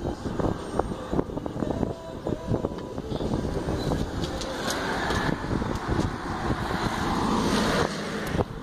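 Traffic noise from a vehicle passing on the street, building over the second half to its loudest just before it cuts off. Short knocks and handling noise are scattered through the first half.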